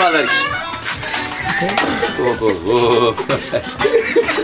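Several people's voices exclaiming "oh oh oh" and laughing, with music playing along.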